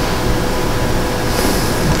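Steady room tone in a hall: an even hiss with faint steady hum, with no distinct events.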